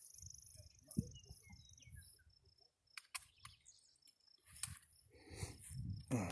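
Quiet outdoor ambience: a faint steady high insect buzz, with low wind rumble on the microphone, a brief thump about a second in and a few faint clicks.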